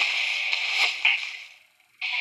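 A toilet flushing: a rush of water with a couple of sharp splashes, fading away to near silence near the end.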